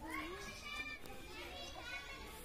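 Faint, high-pitched children's voices calling and chattering at a distance.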